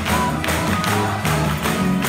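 Live gospel music with a stepping bass line and a steady beat, the congregation clapping along.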